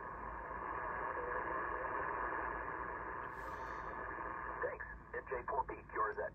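Receiver hiss from a 1991 Yaesu FT-890/AT HF transceiver's speaker, tuned to lower sideband on the 80-meter band, the sound cut off above the narrow voice passband. In the last second and a half a faint, choppy single-sideband voice from a distant contest station comes through the noise.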